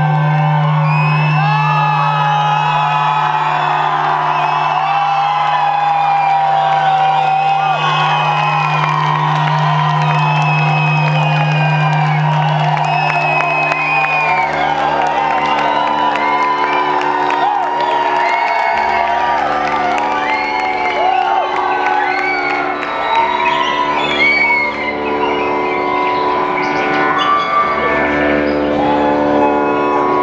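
Live electronic music played loud over a club PA, with a held low drone that gives way about halfway through to a pulsing bass line, and gliding tones layered above; the crowd whoops and cheers.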